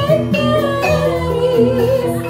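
Javanese gamelan music accompanying a jathilan dance: steady metallophone tones and drum, with a singer holding a long wavering high note through the second half.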